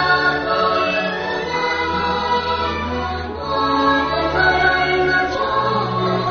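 A song: voices singing long held notes over a full musical backing.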